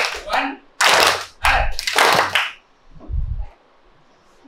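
A roomful of students applauding in a few loud bursts, with voices mixed in, dying away by about three and a half seconds in. A short low thump comes just before the end of the applause.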